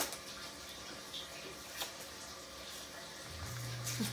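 Small paper seed packet handled and worked open by fingers: soft paper rustling with a few faint crisp clicks. A steady low hum starts near the end.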